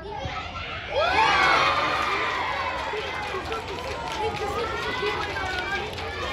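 A group of children's voices shouting and cheering together, breaking out suddenly and loudly about a second in, then easing into mixed chatter.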